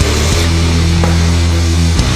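Sludge metal recording in an instrumental passage: heavy, distorted guitars and bass holding long, loud low chords, the chord changing about a third of a second in.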